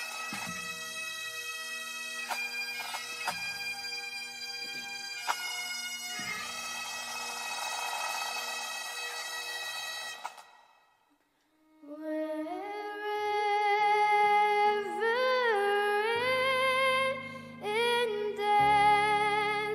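A pipe band's Great Highland bagpipes play a tune over their steady drones, with a few snare drum strokes; the pipes stop about ten seconds in. After a brief silence, a violin begins a slow melody with vibrato over low sustained accompaniment.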